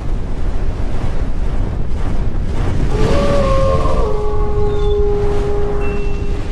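Logo sound design: a deep, steady rumble with a held tone coming in about three seconds in and dropping slightly in pitch a second later.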